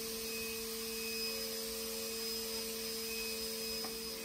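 A 5-axis CNC machining centre running with a steady hum made of two tones, one an octave above the other, and a fainter high whine over a light hiss.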